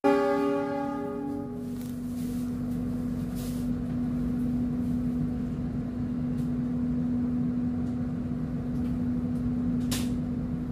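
A train horn sounds briefly and fades out within about a second and a half, over a steady low hum from the train as it pulls out of the station.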